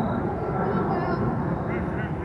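Distant shouts and calls from soccer players and spectators across an open field, over a steady low rumble.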